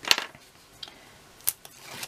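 Cardstock being folded over and pressed flat on a craft mat: a loud rustle-and-tap of the paper at the start, a few light clicks, and a short sharp crackle about one and a half seconds in.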